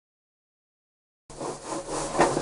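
Dead silence for just over a second, then sound cuts in suddenly: a jumbled noise of tank-washing work with a steady low hum beneath it.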